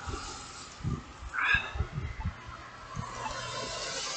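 Wind buffeting a phone's microphone in irregular low rumbles and thumps. About one and a half seconds in there is one short, high-pitched sound that rises in pitch.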